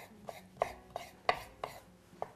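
Chef's knife slicing soft roasted red peppers on a wooden cutting board, the blade knocking the board in a steady run of about three strokes a second.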